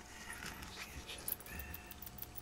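Two short, faint high-pitched squeaks from a small animal, one early and one in the second half, over light scratching and ticking.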